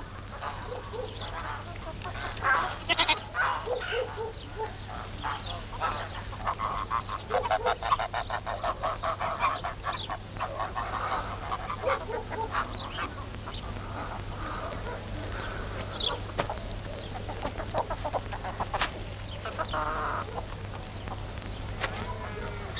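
A goat bleating again and again, short wavering calls that come thickest in the middle, over a steady low hum.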